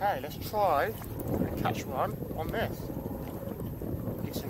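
Several short, high voice sounds without clear words over a steady rush of wind on the microphone and water around a small inflatable boat.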